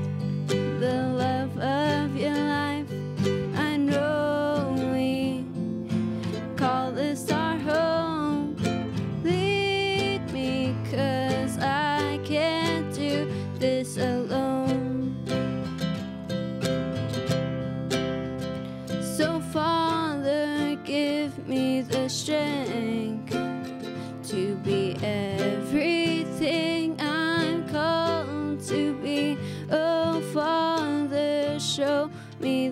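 A woman and a teenage girl singing a Christian song together, accompanied by strummed acoustic guitar and a small plucked string instrument.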